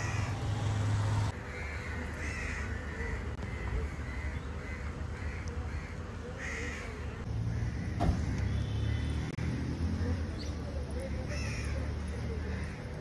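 Crows cawing outdoors, several short calls in quick runs, over a steady low rumble. One brief sharp knock comes about eight seconds in.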